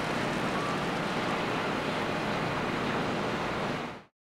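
Steady outdoor background noise, an even rushing hiss with no voices, fading out at the very end.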